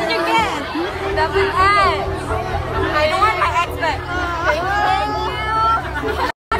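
Several people talking and chattering over a crowd's babble, with a steady low pulsing hum underneath.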